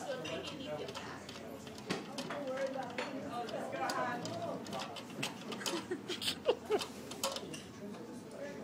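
Background chatter of restaurant diners, with scattered light clicks and clinks, several in the second half.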